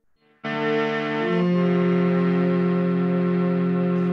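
Electronic keyboard played as a harmonium, sounding sustained held chords that start suddenly about half a second in, with the chord changing about a second later; its player says the instrument is out of tune.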